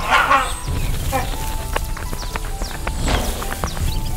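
Background music with short, sharp bird calls over it, the calls of a greater racket-tailed drongo mobbing a great hornbill. A brief burst of rustle comes right at the start.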